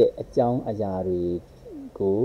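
Only speech: a man talking, with some long drawn-out vowels.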